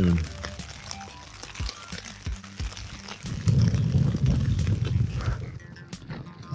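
Rain pattering on the nylon fabric of a tent as faint scattered ticks, with a low rumble lasting about two seconds past the middle.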